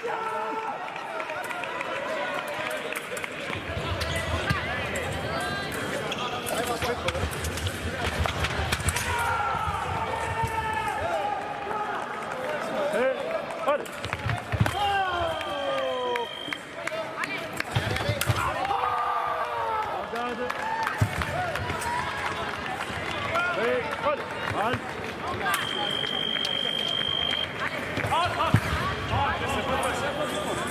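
Sabre fencing on the piste: sharp stamps and knocks of footwork and blade contact, with shouting voices throughout. Twice a steady high electronic beep of about two seconds sounds from the scoring machine, registering a touch, once about halfway through and again near the end.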